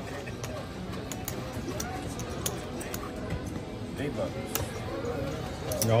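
Cardroom background: a murmur of distant voices and music, with scattered sharp clicks.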